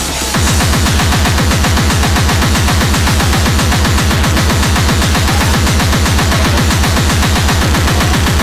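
Speedcore: distorted kick drums hammering at about eight a second, each with a falling pitch, under dense noisy synth distortion. The kick pattern comes in just after the start.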